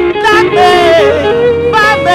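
A singer holding long notes with a wide vibrato over sustained instrumental chords: live church music.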